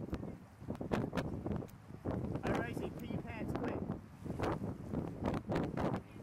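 Wind buffeting the microphone in gusts, with brief indistinct voices.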